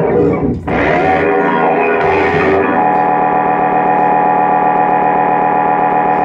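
Distorted, effects-laden electric guitars and keyboard of a live band. The shifting chords settle about three seconds in into one sustained droning chord that holds steady.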